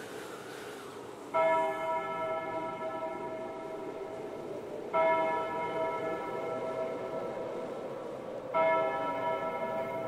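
A church bell tolling three times, about three and a half seconds apart, each stroke ringing on and slowly dying away.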